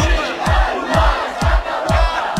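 A group of voices shouting a Catalan independence chant in unison over a bass drum beating about twice a second.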